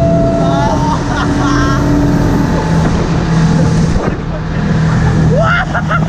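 Motorboat engine running steadily at speed while towing, with water rushing past. Voices shout and whoop over it: a long rising call in the first second or so and another rising call near the end.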